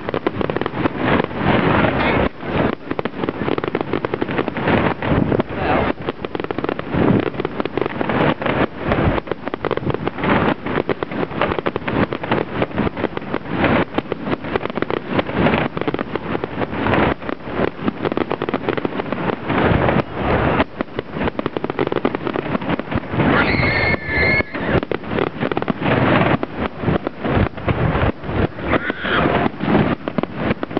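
Fireworks display: a dense, continuous run of bangs and crackles from bursting aerial shells, heard through a camera's built-in microphone, with a short whistle about two-thirds of the way through.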